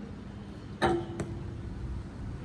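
BMX bike rolling on concrete, with a low tyre rumble. A little under a second in comes one sharp metallic clack that rings on briefly, followed by a lighter click.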